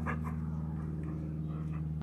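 A dog gives a short whimper just after the start, over a steady low hum that runs throughout.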